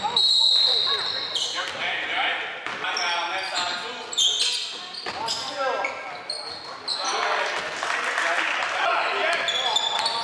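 Indoor basketball game: sneakers squeaking on the hardwood court in short high chirps, the ball bouncing, and players' shouts, all echoing in the gym.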